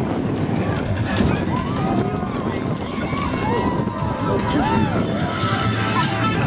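Riders on the Guardians of the Galaxy: Cosmic Rewind indoor roller coaster whooping and shouting in drawn-out rising and falling calls. Under them is a steady loud rushing rumble of the coaster in motion.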